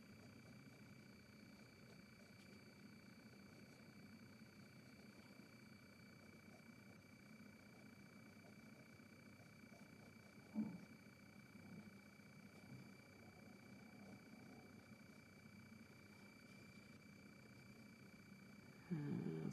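Near silence: room tone with faint steady electrical tones, and a brief faint sound about ten and a half seconds in.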